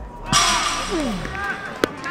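Footballers' voices shouting at a near-miss on goal, with one long falling 'oh' over a sudden noisy rush, and a single sharp knock near the end.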